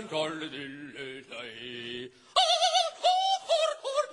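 A man singing mock opera: low held notes, then a little over two seconds in, a high falsetto with a wide, fast vibrato in short broken phrases.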